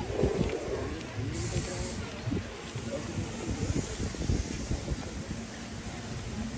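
Outdoor poolside ambience: wind buffeting the microphone, with faint voices of people in the background and a brief hiss about a second and a half in.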